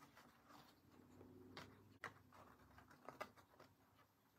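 Near silence: faint room tone with a few soft ticks and rustles of hands handling a paper card and cord.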